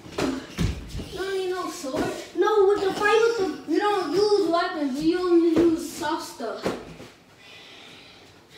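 A young girl's voice making a wordless sing-song tune that glides up and down and ends on a held note, with a few sharp thumps in between.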